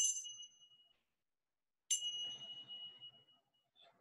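Small hand-held brass chime ringing with a high, clear tone. The ring from an earlier strike fades out in the first second, then a single new strike about two seconds in rings for about a second and a half before dying away.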